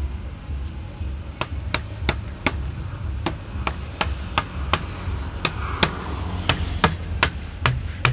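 A hammer tapping on the lid of a white plastic bucket: a steady run of sharp knocks, about three a second, starting a little over a second in.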